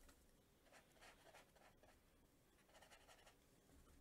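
Near silence with a few faint strokes of a watercolour brush on paper.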